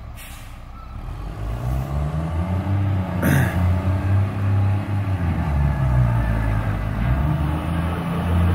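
Concrete mixer truck's diesel engine revving up and pulling hard under load, in low range, as it climbs a steep wet lawn. There is a short hiss of air about three seconds in.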